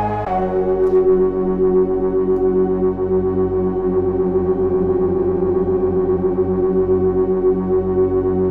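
FXpansion Strobe2 software synthesizer holding one long sawtooth note with stacked unison voices. Their fine pitch is spread apart, so they beat against each other with a slow wobble. The detune amount is being turned down partway through.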